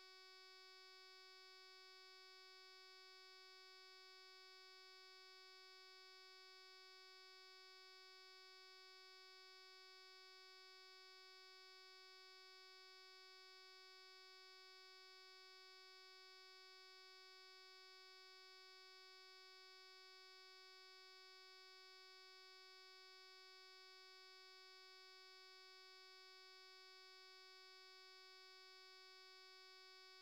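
Near silence, with only a faint, steady electrical hum: one unchanging tone with a row of higher overtones.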